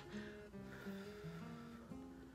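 Quiet background music: a melody of plucked-string notes, one short note after another.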